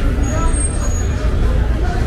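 Street ambience: voices babbling over a steady low rumble of traffic, with a few thin, high squeaks in the first second.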